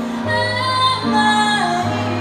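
A woman singing a J-pop song live into a microphone, accompanied by a stage piano, both heard through a PA; held sung notes over steady low piano notes.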